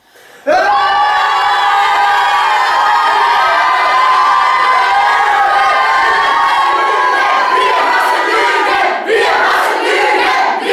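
Choir of women's and men's voices singing loudly. It comes in suddenly about half a second in and holds one sustained chord for about eight seconds, then breaks briefly near the end before the next phrase.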